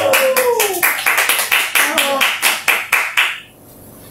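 Hand clapping in quick, even claps, about six a second, applauding the end of a poem reading, with a voice calling out over it twice. The clapping stops about three and a half seconds in.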